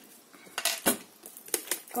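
A handful of short, sharp clicks and knocks of a small plastic spray bottle being handled: its clear cap pulled off and set down on a craft mat.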